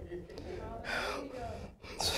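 Faint murmured speech and an audible breath, well below the level of the sermon.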